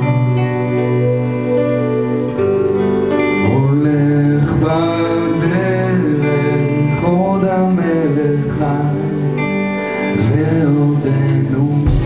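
Live band performance: a man singing into the microphone over guitar and keyboard, with sung phrases rising and falling throughout.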